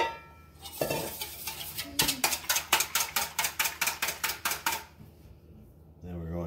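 A ringing metal clink, then a wire whisk beating the wet batter of milk and egg in a stainless steel bowl: quick, even strokes of about five a second lasting about three seconds.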